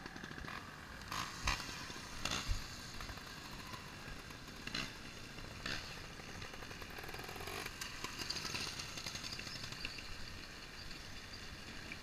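Trials motorcycle rolling down a loose gravel track: a low engine note under the noise of tyres on stones and wind on the helmet microphone, with a few sharp knocks from bumps in the first few seconds.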